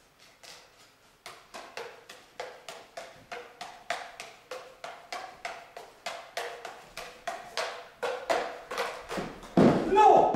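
Five plastic juggling clubs in a cascade: a steady run of catches slapping into the hands, about three or four a second, echoing in a large hall. Near the end comes a louder crash as the pattern collapses and a club drops to the floor.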